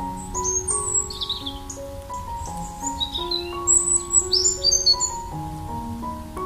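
Soft piano music playing slow, sustained notes, with small birds chirping over it in two spells, just after the start and again from about halfway through.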